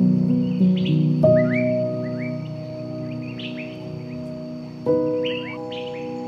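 Slow, soft piano music with chords that ring on. New chords are struck about a second in and again near the end. Small birds chirp over the music in short sweeping notes.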